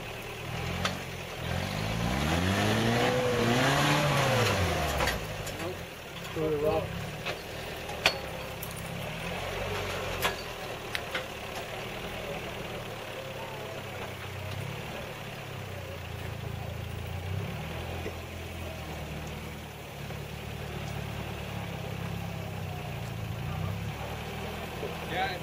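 Engine of a 4x4 SUV climbing a steep rock ledge. The revs rise and fall back once near the start, then it runs steadily at low revs as it crawls, with a few sharp knocks a little later.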